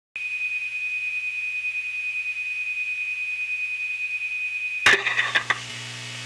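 Opening of a punk rock song: a single steady high-pitched beep-like tone held for about four and a half seconds over a low hum, cut off by a loud hit as electric guitars and drums come in near the end.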